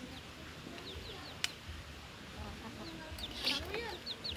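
Chickens clucking in the background with short high bird chirps, and a single sharp click about a second and a half in.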